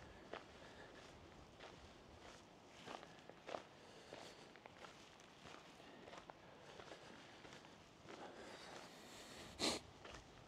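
Faint footsteps on gravel, irregularly spaced, with one louder, sharper step near the end.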